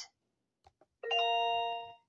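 A single bell-like chime, starting sharply about a second in and ringing for about a second before fading, preceded by two faint clicks.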